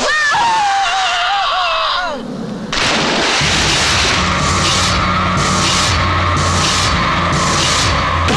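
Hiss of water sprayed hard from hoses, under a man's whooping shout and laughter, for about two seconds. Then a sudden loud, noisy dramatic film score with a low drone and a pulsing beat about once a second.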